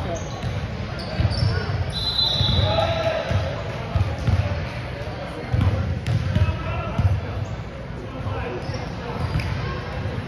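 Basketball bouncing on a hardwood gym floor in irregular thuds, with voices echoing around the hall.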